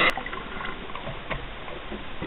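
Underwater ambience picked up through a diving camera's housing: a steady hiss with faint scattered clicks and crackles.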